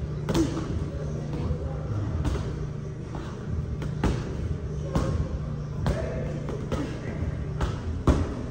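Punches and kicks landing on hanging heavy bags: sharp slaps and thuds at irregular intervals, roughly one every second, with a steady low hum underneath.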